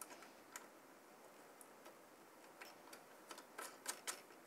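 Faint, scattered clicks and ticks of small metal nuts being hand-threaded onto the standoffs of a CPU cooler's mounting crossbar, coming more often near the end.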